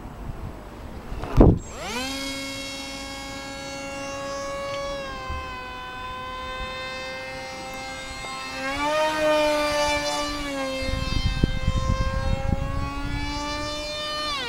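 The electric motor and propeller of a small foam RC jet whine overhead. The pitch climbs to a steady note just after a sharp thump about a second and a half in, steps higher with more throttle around eight and a half seconds, then eases back and starts dropping near the end. Low wind rumble on the microphone joins in the second half.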